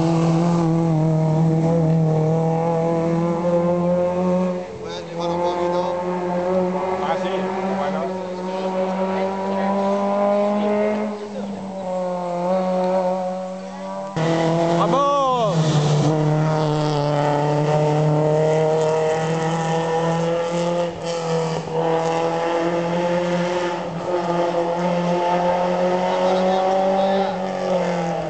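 Rally car engine running hard at high revs, a continuous engine note that slowly rises and falls as the car works through the stage. The sound breaks off suddenly about halfway through and picks up again.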